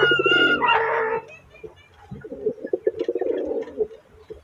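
Pigeon cooing, a low pulsing coo repeated through the latter part, after background music fades out about a second in.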